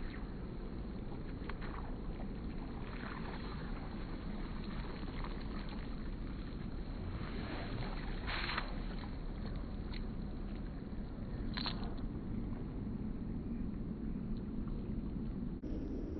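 Steady rush of river water around a wading angler, broken by brief swishes as the fly line rips off the water surface during two-handed spey casts; the clearest comes a little past halfway, with fainter ones about three seconds in and near twelve seconds.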